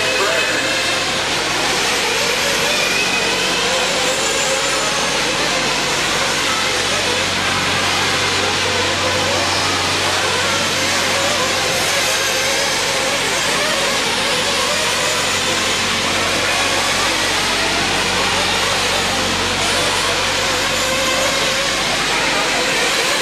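A pack of 1/8-scale nitro RC truggies racing together, their small engines whining and rising and falling in pitch as they throttle up and down, merging into one steady din.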